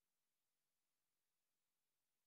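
Near silence: only a very faint, steady hiss.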